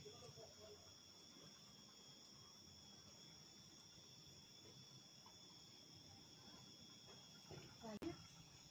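Faint, steady high-pitched drone of insects in the countryside, several unbroken tones held throughout.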